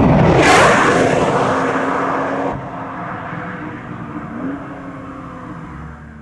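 Sound effect of a car speeding past: an abrupt, loud whoosh that sweeps in pitch during the first second or so. It then settles into a quieter steady hum that fades near the end.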